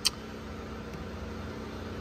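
Steady low hum and hiss of background machine noise, like a fan running, with one short sharp click right at the start.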